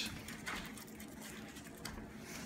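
Faint, light clicking and pattering of small dogs' claws on a tile floor.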